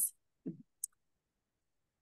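A pause in video-call audio that drops to dead silence, broken by a brief low murmur about half a second in and a single tiny click just after.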